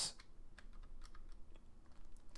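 Faint computer keyboard keystrokes: a few light, irregularly spaced key taps, the keys that scroll a terminal man page down a few lines.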